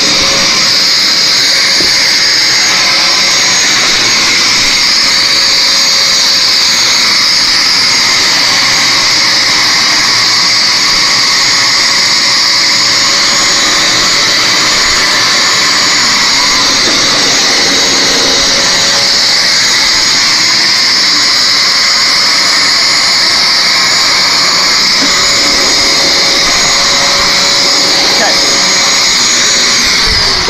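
Bissell Lift-Off Deep Cleaner Pet upright carpet cleaner running steadily through a cleaning pass over carpet: a loud, even suction-motor noise with a high whine. It cuts off suddenly at the very end.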